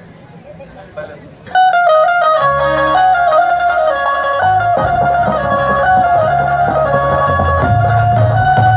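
Live stage band music for a Punjabi song, starting abruptly about a second and a half in with a quick, bright melody line; bass joins soon after, and a fuller, heavier beat comes in about five seconds in.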